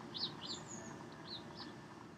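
A small bird chirping faintly: a few short, high chirps spread over two seconds.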